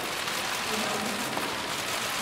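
Many press photographers' camera shutters clicking rapidly over one another, making a steady patter.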